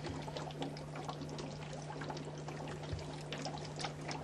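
Liquid bubbling and trickling, with many small crackling pops, over a steady low hum.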